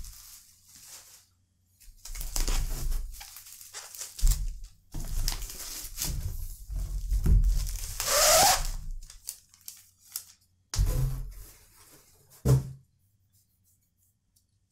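Cardboard box and bubble-wrapped packages handled while unpacking: irregular rustling and crinkling of cardboard and plastic wrap, with a longer, louder rustle about eight seconds in. Two short thuds follow as packages are set down on a wooden table, then it goes quiet.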